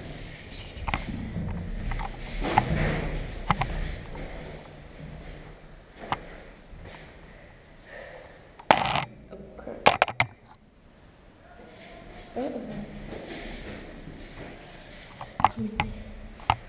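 Muffled rustling and handling noise close by, with faint indistinct voices and a few sharp clicks or knocks; the loudest is a cluster of sharp knocks a little past halfway.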